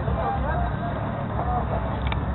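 Background voices talking over a steady low rumble.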